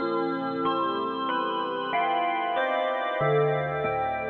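Ambient music: layered sustained tones, the notes changing in an even pulse about every two-thirds of a second, with a deeper bass note coming in near the end.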